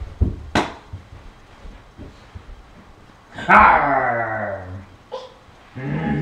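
Two sharp knocks near the start. About three and a half seconds in comes a loud, drawn-out vocal call lasting about a second and a half, sliding slightly down in pitch.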